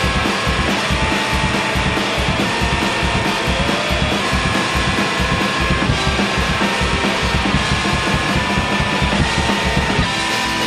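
Post-hardcore rock music led by dense drum-kit playing, with bass drum, snare and cymbals, under sustained higher tones.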